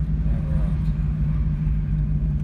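Steady low rumble of a car's engine and tyres heard from inside the cabin while driving along at speed, with a steady low hum underneath.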